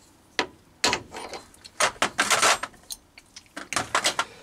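A handful of sharp metal clicks and knocks, with a quick rattle just past the middle, as a steel ER32 collet chuck holding a drill is pulled out of a lathe tailstock and handled.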